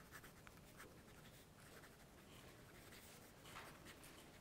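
Faint scratching of a pen writing by hand on a sheet, barely above room tone.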